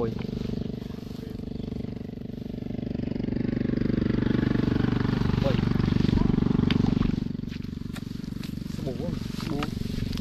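A motor engine running steadily, growing louder toward the middle and fading again, like a motor vehicle passing by. A few brief voice fragments are heard near the end.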